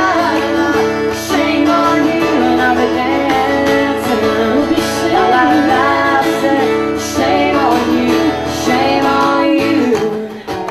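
Live song: women singing with guitar accompaniment, holding long notes.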